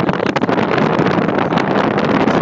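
Air-conditioning blower of a 2002 Ford F-250 running on high, air rushing loudly out of the dash vents and buffeting the microphone. The air is already blowing cold, so the A/C is working.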